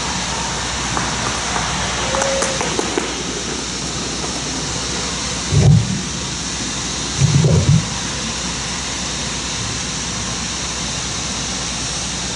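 Steady outdoor background noise, like street traffic, with two dull, low thumps near the middle, about a second and a half apart, as the podium microphone is bumped while speakers change over.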